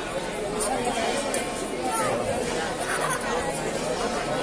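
A large outdoor crowd talking among themselves: a steady babble of many voices at once, with no single speaker standing out.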